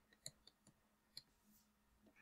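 Near silence: room tone with a few faint, short clicks spread through the first second or so.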